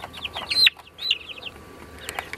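Young chicken peeping: a run of short, high-pitched peeps, the loudest about half a second in.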